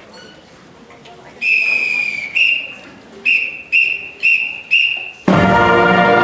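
A whistle blown as a count-off, one long blast and then five short ones. The full brass pep band comes in together and loud about five seconds in.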